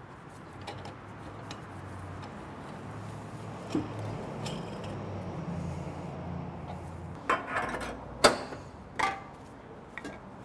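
Metal parts of a meat grinder being handled while the coarse die and retaining ring are fitted onto the grinder head, under a faint steady hum. A few sharp metal knocks come near the end.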